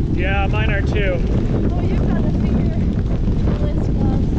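Steady, loud wind rumble on the microphone of a bicycle moving along a dirt road, mixed with the noise of the ride. A short snatch of a person's voice comes near the start.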